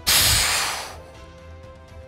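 Explosion sound effect: a sudden loud blast of noise with a low rumble that fades away over about a second, over steady background music.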